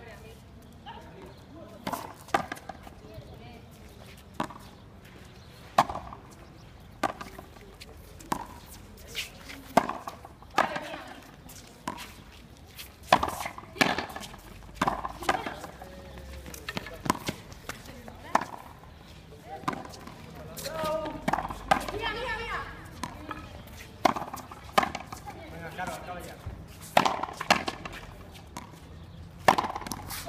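Frontenis rally: the hard rubber ball cracking off rackets, the fronton wall and the concrete floor in a run of sharp knocks, roughly one every second or so.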